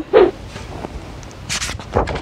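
A picture-book page being turned: a brief rustle of paper about one and a half seconds in, after a short vocal sound from the reader at the start.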